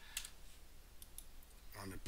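A few faint clicks from a computer mouse and keyboard as a value is typed into a field and the cursor moves on.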